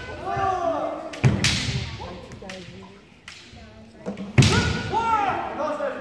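Kendo fencers shouting kiai, long drawn-out cries, with sharp cracks of bamboo shinai striking armour about a second in and again past four seconds, ringing in a large hall.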